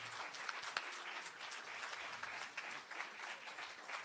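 Audience applauding, many hands clapping at a steady level throughout.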